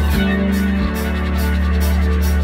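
Live rock band playing an instrumental passage: electric guitar and bass guitar holding sustained chords over a steady low bass, changing chord twice within the first second.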